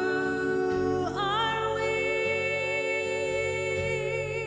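A woman singing a slow worship song into a microphone, holding a long note, then a second long note with vibrato starting about a second in, over a soft band accompaniment that includes guitar.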